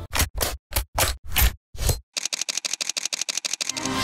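DSLR camera handling: several short scrapes and clicks as the memory-card door is opened, then a fast, even run of clicks, about ten a second, from the rear control dial being turned.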